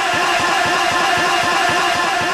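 A man's voice over a microphone and sound system holding one long, steady sung note, with a fast, even low pulsing underneath.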